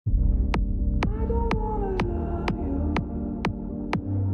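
Logo-intro music: a low, droning bass with a sharp tick about twice a second and a tone that slides slowly downward through the first half.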